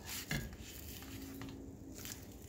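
A metal spatula scraping and sliding across a nonstick frying pan as it goes under a fried egg and turns it over. The loudest scrape comes right at the start.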